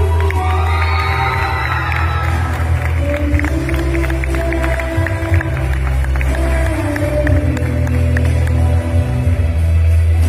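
Loud live music with a heavy, steady bass played through a concert PA, with an audience cheering over it.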